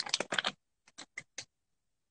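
A man drinking from a clear plastic water bottle: a quick cluster of clicks and crackles in the first half-second, then four short clicks about a fifth of a second apart, then nothing.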